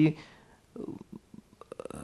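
A pause in a man's speech, heard through a lecture-room microphone: the last word trails off at the start, then faint breath and small mouth clicks in the second half before he speaks again.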